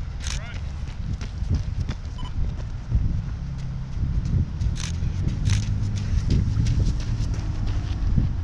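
Wind rumbling on the camera's microphone, with scattered sharp clicks of a runner's footfalls on the pavement as the runner passes close by.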